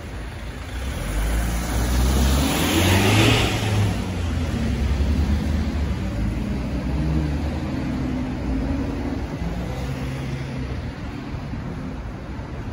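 City street traffic: cars driving past, one pulling away and passing close about two to three seconds in with engine and tyre noise, then steady traffic noise.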